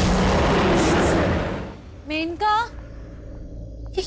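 Dramatic monster sound effect: a loud, rumbling roar for the snarling creature that fades out a little under two seconds in. Then come two short vocal cries, each rising in pitch.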